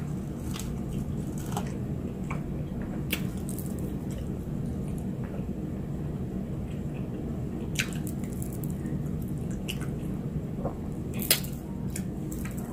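Close-up chewing of a fried cheese stick: wet, squishy mouth sounds with scattered short smacks and clicks as it is bitten and chewed.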